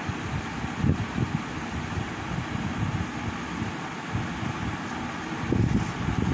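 Steady rushing background noise, like a room fan or air conditioner, with a couple of low bumps, one about a second in and another near the end.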